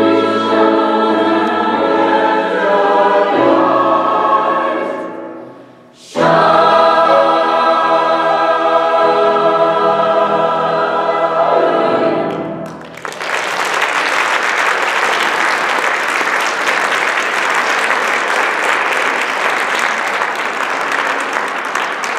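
Mixed choir singing, fading to a brief stop about five seconds in and then coming back in loudly together. The piece ends a little past halfway, and audience applause fills the rest.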